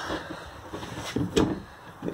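Handling noise of a wall-mounted TV being moved on its swing-out bracket: a few light knocks and a sharper click about one and a half seconds in.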